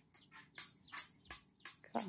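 A small bird chirping repeatedly: a run of short, high chirps, about three a second.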